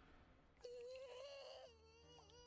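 A faint, high voice crying and whimpering in a long wavering wail that begins about half a second in: an anime character sobbing.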